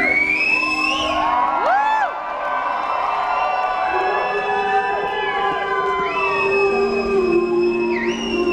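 Live rock band playing an instrumental stretch between sung lines, sustained guitar notes underneath, with the concert audience cheering and whooping over it; held high whistles ring out late on.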